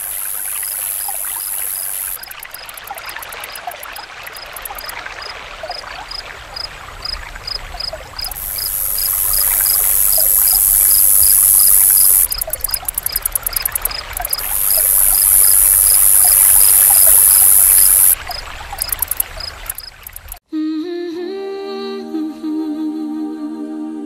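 Insects stridulating in loud, high-pitched stretches that switch on and off, over a steady chirp repeating about three times a second and scattered faint short calls. Music starts abruptly near the end.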